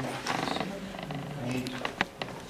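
Low, indistinct speech murmuring, with a few light clicks near the end.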